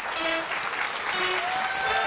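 Studio audience applauding, with music playing.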